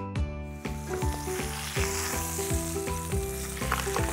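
Food sizzling in a hot pan: a steady frying hiss that comes in about half a second in, over background music with a stepping melody and bass.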